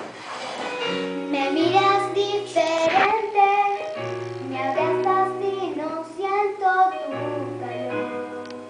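A young girl singing a slow Spanish-language pop ballad over a piano accompaniment, her voice coming in about a second in and carrying on in sung phrases.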